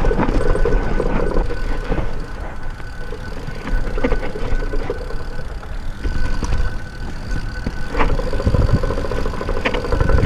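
Yeti SB6 full-suspension mountain bike riding down a rough dirt trail: steady wind rumble on the camera microphone, tyres on dirt and rock, and sharp knocks and rattles from the bike over bumps, heaviest near the start, around four seconds in and near the end.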